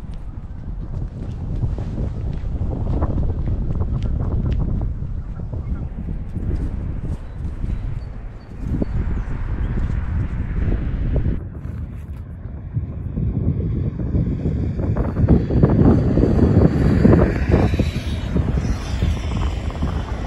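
Wind buffeting the microphone outdoors, an irregular low rumble that swells and dips, strongest late on.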